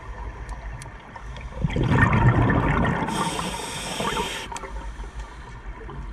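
A scuba diver breathing through a regulator underwater. A loud gush of exhaled bubbles comes a little under two seconds in, then the hiss of an inhalation for about a second and a half, with faint scattered clicks.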